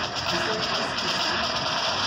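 A marching band playing, brass and drums, heard faintly behind a steady hiss.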